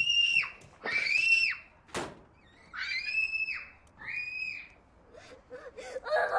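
High-pitched screams, four short cries each rising and falling in pitch, with a sharp knock about two seconds in.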